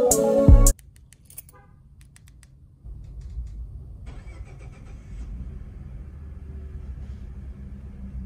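Music cuts off under a second in, followed by a few faint clicks. About three seconds in, a 2014 Ford F-150's 3.5 L EcoBoost twin-turbo V6 starts by remote start: a low rumble that is briefly busier as it catches, then settles into an even idle, muffled through a window screen.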